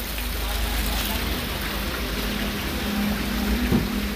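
Steady rushing background noise with a low rumble, and a faint steady hum in the second half.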